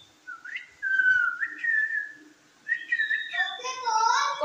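Whistling: a short upward slide, then a held, slightly wavering whistle lasting about a second and a half, and a shorter second whistle; a fuller voice-like call comes in near the end.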